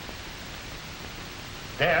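Steady hiss of an old film soundtrack in a pause between lines, with a man's voice starting again right at the end.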